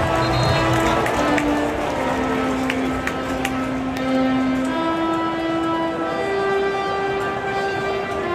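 Music in a football stadium, a melody of long held notes stepping up and down in pitch, over the steady noise of a large crowd.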